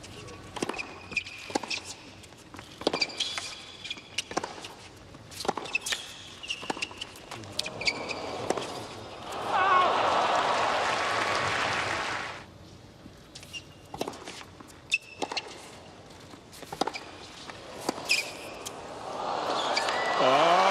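Tennis ball struck by rackets and bouncing on a hard court, with short shoe squeaks, in rallies. Crowd applause and cheering swell about ten seconds in and rise again near the end.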